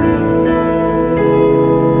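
Piano played live through an arena sound system: slow, sustained chords, with new chords struck about half a second and just over a second in.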